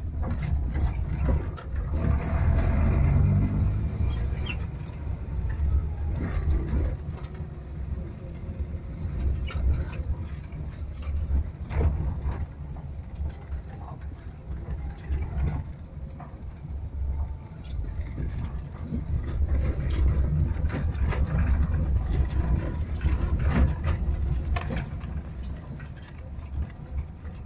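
Maruti Omni's small three-cylinder petrol engine running under load, heard from inside the van's cabin, with a rise in engine pitch about two to three seconds in. Frequent knocks and rattles from the body and suspension over a rough dirt track run through it.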